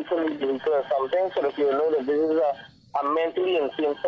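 Speech only: a caller talking over a phone line, with a brief pause after about two and a half seconds.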